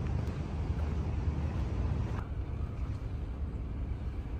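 Steady low rumble of vehicle noise; the higher hiss drops away about two seconds in.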